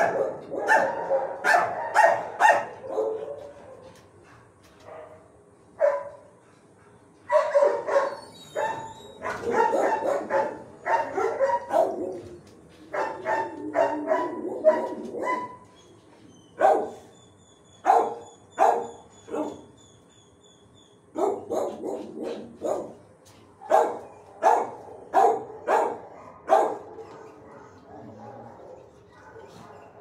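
Shelter dogs barking in runs of sharp barks with short quiet gaps between them; the barking tails off near the end.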